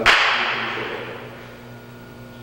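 A single sharp crack right at the start, its echo dying away over about a second and a half in a large, reverberant hall.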